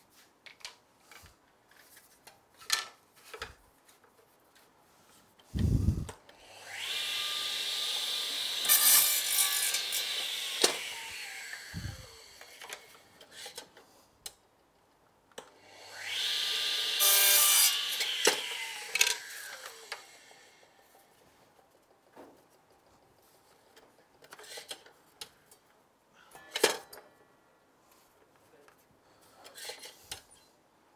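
Mitre saw run twice, about six and fifteen seconds in: each time the motor spins up, the blade cuts through a thin timber strip, and the blade winds down with a falling whine. Small knocks and clicks of timber being handled come between and after the cuts.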